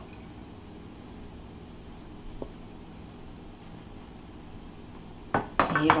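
Kitchenware handled against a quiet background: a wooden spoon and glass dish give one faint tick about two seconds in and a few short, sharp knocks near the end as chorizo is spooned out and the dish is put down.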